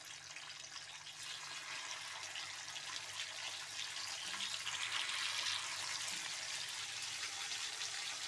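Marinated mutton chops sizzling in hot oil on an iron tawa, the sizzle growing louder as more chops are laid into the pan.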